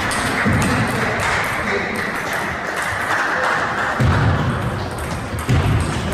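Table tennis ball being struck back and forth, a run of sharp, irregular clicks of ball on bat and table, over the steady murmur of a sports hall. A few low thuds, most loudly about four seconds in.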